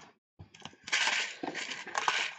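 Sand and small beads rattling and swishing inside a handmade paper shaker card as it is shaken, starting about a second in.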